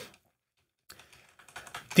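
A few quiet computer keyboard keystrokes in the second half, following about a second of dead silence, as lines of code are selected in the editor.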